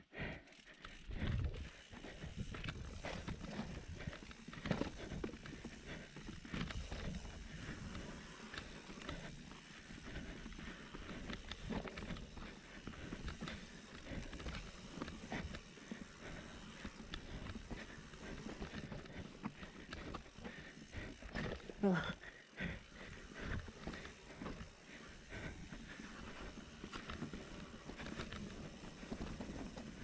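Mountain bike descending a rough dirt singletrack: tyres rolling over dirt and rocks, with frequent knocks and rattles from the bike over bumps.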